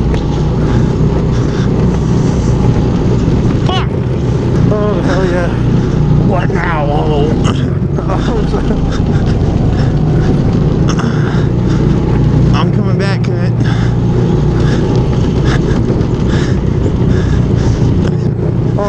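Go-kart's small engine running steadily, heard from the driver's seat, with bursts of voices and laughter over it.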